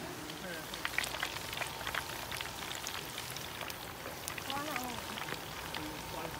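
Hot oil crackling and popping as food deep-fries in a basket, a dense patter of small pops.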